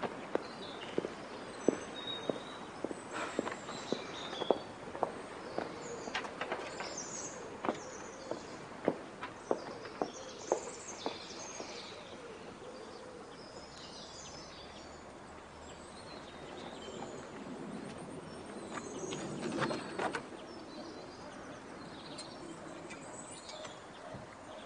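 Outdoor ambience with birds chirping, and a run of sharp footsteps on a hard surface for about the first ten seconds, gradually fading.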